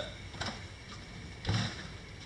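Travel trailer's metal entry door pushed shut: a faint click, then a short, muffled thud about a second and a half in as the door closes.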